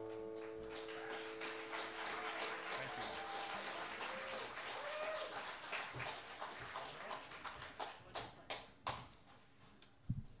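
The last strummed acoustic guitar chord rings out over audience applause and a few whoops. The clapping thins to scattered claps and dies away near the end.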